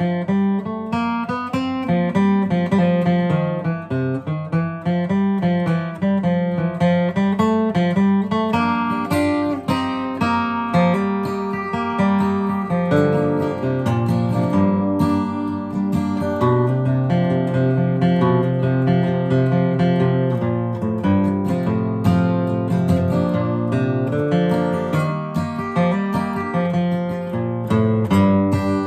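Steel-string acoustic guitar with a capo, flatpicked slowly: a continuous run of picked melody notes with bass notes under them.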